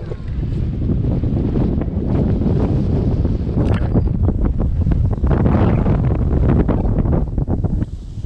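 Strong wind buffeting the microphone: a loud, continuous rumbling gust noise.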